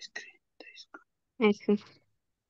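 Speech only: soft, whispered-sounding talk, then a voice answering "yes" about one and a half seconds in.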